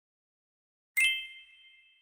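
A single bright ding, a chime sound effect, struck about a second in after silence and ringing out as it fades over about a second.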